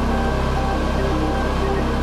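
Background music: held notes shifting every half second or so over a steady low bass, at an even level throughout.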